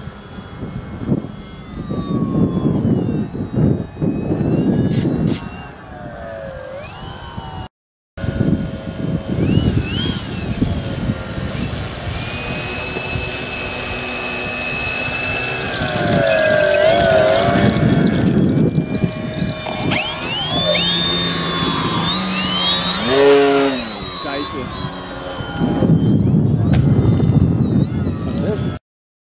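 Multiplex FunCub RC model plane's electric motor and propeller whining, the pitch rising and falling with the throttle, over heavy wind rumble on the microphone. There is a short break about eight seconds in.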